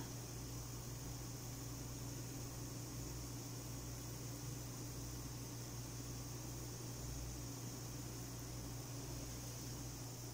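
Steady low hiss with a constant low hum from a steamer on the stove.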